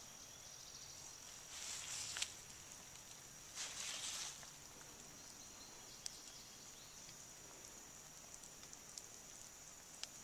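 Faint, steady high-pitched outdoor insect chorus, with two short bursts of rustling noise about two and four seconds in and a few light clicks.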